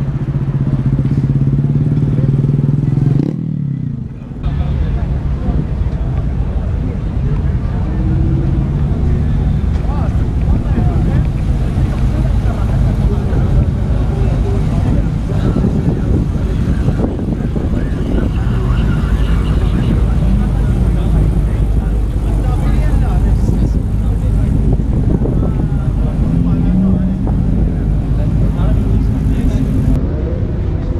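Motorcycle engine running at a steady pitch for the first few seconds. The sound then drops off briefly and gives way to continuous outdoor crowd noise: background chatter over a low rumble.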